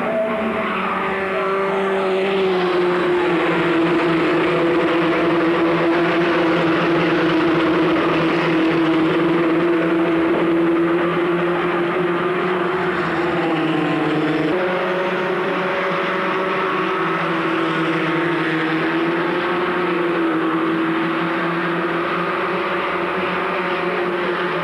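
Formula Ford 1600 single-seaters racing, their 1600 cc Ford four-cylinder engines held at high revs in a steady, slightly wavering note. The sound changes abruptly about halfway through.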